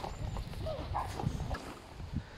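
Footsteps of a person walking outdoors, irregular short knocks over a low rumble.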